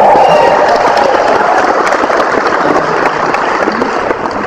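Concert audience clapping, with a voice or two cheering near the start; the applause thins slightly toward the end.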